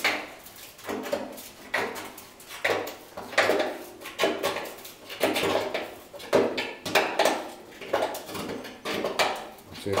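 Hand tool prising open the folded edge of a steel car door skin: a run of metallic scraping and clinking strokes, about one a second.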